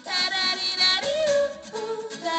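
A woman singing into a handheld microphone, holding a high note and then stepping down to lower notes about a second in and again near the end.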